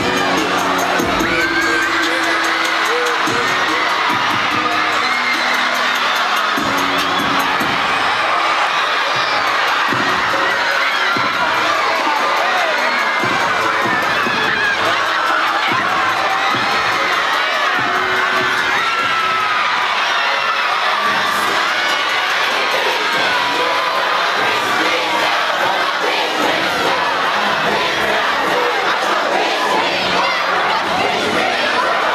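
A large crowd of high-school students in a gymnasium, shouting and cheering loudly and without letup, many voices at once.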